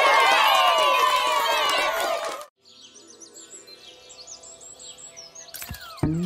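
A loud burst of many voices cheering together that cuts off suddenly about two and a half seconds in, followed by quiet cartoon birdsong: short high chirps over faint background music.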